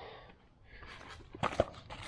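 Cardboard packaging rustling and wires being handled, with a couple of sharp clicks about one and a half seconds in.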